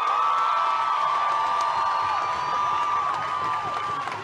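Large crowd cheering, with several long, high whoops held over the noise, dropping out one by one near the end.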